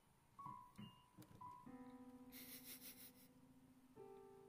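An electronic keyboard played quietly: a few short notes, then one note held steady for about two seconds, and a new note struck at the very end.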